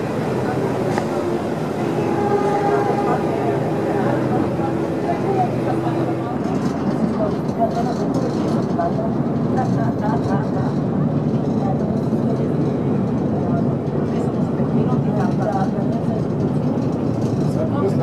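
Passenger ferry's engine running steadily, a constant low drone with a hum, under indistinct voices of people on board.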